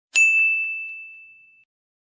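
A single bright ding chime struck once just after the start, ringing at one high pitch and fading away over about a second and a half, with two faint lighter taps soon after the strike.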